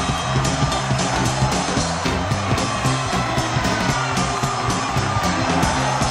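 Live rock and roll band playing an instrumental passage with a fast, steady beat.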